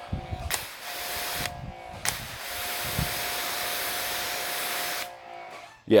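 Water spray hissing onto a painted car hood in a fine mist: a short spray of about a second, then a longer steady spray of about three seconds, to test the water beading on the waxed panels.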